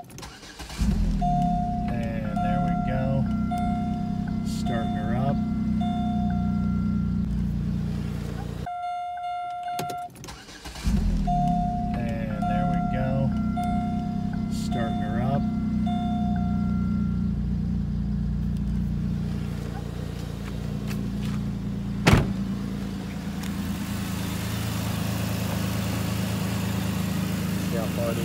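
Pontiac G6 engine starting and settling into a steady idle, with a dashboard warning chime repeating over it for several seconds. The start and chime are heard a second time about eleven seconds in, then the engine idles steadily, with one sharp click about 22 seconds in.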